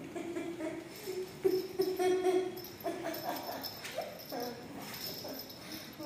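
A teething puppy whining in several short stretches, with a few shorter calls later, as it tugs at long hair in its teeth.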